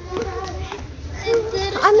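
Children's voices chattering and calling out, with higher gliding calls in the second half.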